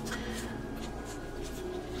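A steady low hum with a few faint, soft scratchy rustles.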